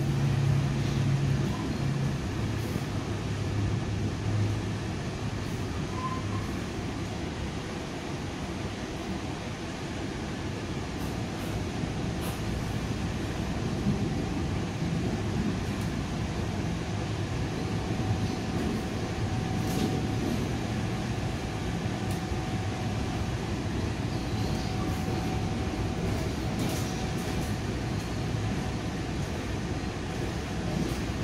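Steady rumble inside a commuter train coach running along the track, with a few faint clicks here and there.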